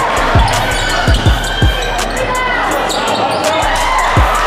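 A basketball being dribbled on a hardwood gym floor: a series of sharp low bounces, about five, mostly in the first two seconds.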